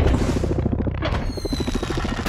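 Action-film sound effects: a sudden crash at the start, then a dense wash of smashing metal and explosion noise, with a thin falling whistle in the second half.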